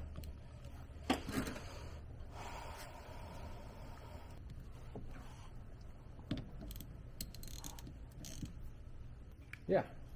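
Faint clicks and knocks with a stretch of soft scraping, from a car battery, its plastic shims and battery box being handled as the battery is set in place.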